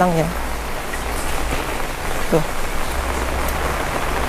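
Heavy rain pouring down steadily on wet paving, an even hiss.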